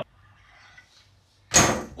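A desktop PC tower case being dragged out across a wooden floor: a faint scuffing at first, then one short, loud scraping knock about one and a half seconds in as the case jolts.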